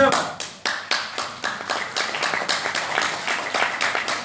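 A small audience clapping: sharp hand claps come several times a second, on a fairly even beat, through the whole stretch.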